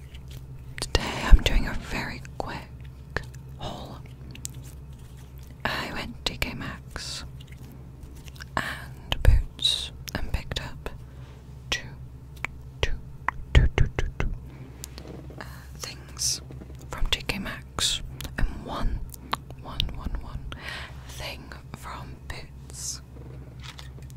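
Close-up whispering into a Blue Yeti condenser microphone, broken up by short sharp mouth clicks, over a low steady hum.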